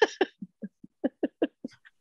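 A woman's laughter trailing off in a run of short breathy laughs that grow quieter and die away near the end.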